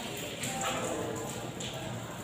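Chalk tapping and scraping against a blackboard in a few short strokes as letters are written.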